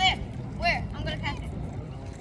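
Children's high-pitched voices calling out in a few short bursts over a steady low rumble.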